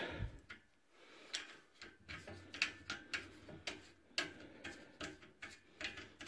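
Faint, irregular light clicks and taps of small metal hardware being handled and fitted into the steel upright of a barbell rack: a short threaded stabilizer piece going into its hole.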